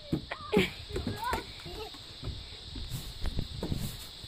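Children's voices calling faintly in short bits, with scattered light knocks and a low rumble of wind on the microphone.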